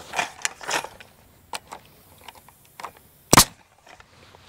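Pneumatic nail gun firing once, a single sharp crack about three seconds in, driving a nail into a pressure-treated wooden fence board, after a few light knocks. The air pressure is too low for the job: right after the shot the builder goes to turn it up.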